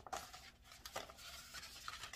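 Faint rustling and a few light scrapes of a peel-and-stick vinyl wall decal sheet being handled and set aside.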